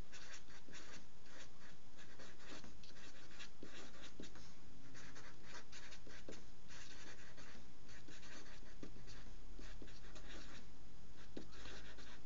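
Felt-tip marker writing on paper: a steady run of many short, irregular pen strokes as a line of words is written out.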